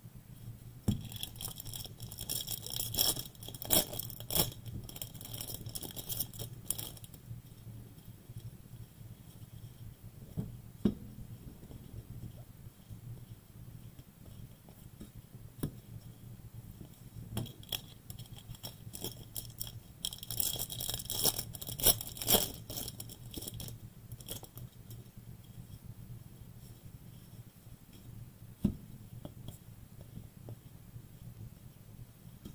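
Foil trading-card pack wrappers being torn open and crinkled by gloved hands, in two spells of crackling, one from about a second in to seven seconds and another around twenty seconds in. Between them come soft scrapes and clicks of cards being handled, over a low steady hum.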